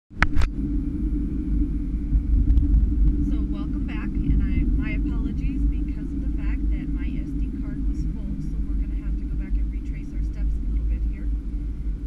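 Car driving at road speed, heard from inside the cabin: a steady low rumble of engine and tyre noise. Two sharp clicks right at the start.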